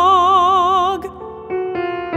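Classical art song: a woman's voice holds a long sung note with a wide, even vibrato over piano, breaking off about a second in, after which a few quieter piano notes sound on their own.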